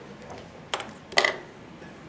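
Two short clicks about half a second apart as a tippet spool and line clippers are handled to cut a length of tippet.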